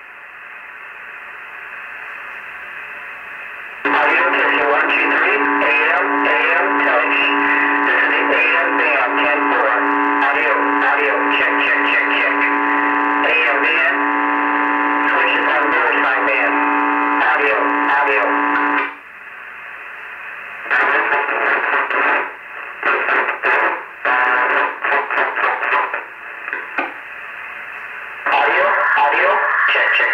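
A Sears Road Talker 40 CB radio playing through its speaker with the thin, narrow sound of radio audio. It starts with open-channel hiss. From about four seconds in, a strong transmission comes through for some fifteen seconds, a steady low tone running under garbled sound. Then the hiss returns, broken by short choppy bursts of signal, and a strong signal comes back near the end.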